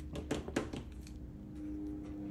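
Construction paper rustling and crackling as it is handled and opened out at the fold, a few soft crackles in the first second, then quieter.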